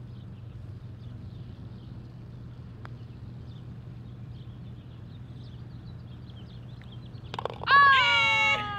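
A putter taps a golf ball once, about three seconds in, over a steady low hum and faint bird chirps. Near the end comes a loud, high-pitched whoop of celebration from one of the players.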